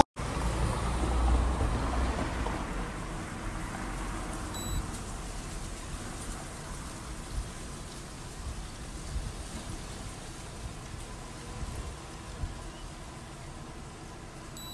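Steady background noise, a hiss with low rumble, with a few faint soft ticks; slightly louder for the first couple of seconds, then settling lower.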